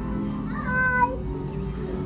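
A person's short, high call, rising then held, about half a second in, over steady background music.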